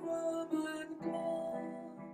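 Electronic keyboard with a piano sound playing slow chords, new notes struck about every half second and then left to ring and fade.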